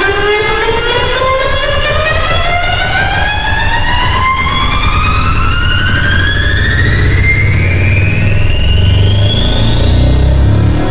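Black MIDI played through the Khor Keys 3 piano soundfont: a dense mass of synthesized piano notes forms one continuous pitch glide, rising steadily about two octaves. Under it, a low cluster of bass notes thickens and grows louder toward the end as the tempo accelerates.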